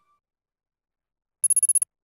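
Silence, then a bit over a second in a short, rapid, high-pitched ringing trill of about eight quick strikes, lasting under half a second: a bell-like sound effect.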